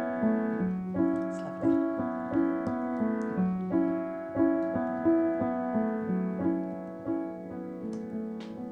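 Sampled upright piano from the E Instruments Pure Upright iOS app, played from a MIDI keyboard: a rhythmic run of low-mid chords struck about every two-thirds of a second, each decaying, easing off near the end. The tone is being morphed from the app's vintage setting toward its detune setting, which imitates a slightly out-of-tune old upright.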